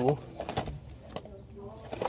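A voice trails off, then soft wavering hums and two light clicks as boxed vinyl figures and blister packs are handled on a store shelf.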